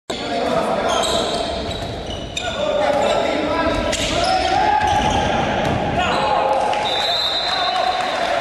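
Indoor handball game: the ball bouncing on the wooden court among shouting voices, all echoing in a large sports hall.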